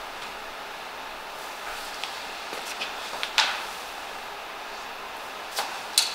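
Quiet room tone with a few light footfalls and knocks from people stepping through lunges on a gym floor. The sharpest knock comes about three and a half seconds in.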